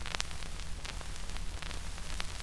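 Surface noise from a 1953 Baton record playing on a turntable, in the unrecorded groove after the song has ended: a steady hiss with scattered crackles and clicks over a low hum.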